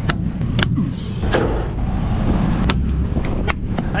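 Curtainsider trailer's metal curtain buckles being hooked under the rail and snapped shut by hand: about five sharp clicks spread over a few seconds, over a steady low rumble.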